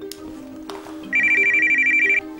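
Mobile phone ringing: a fast-pulsing, high electronic trill that starts about a second in, over background music.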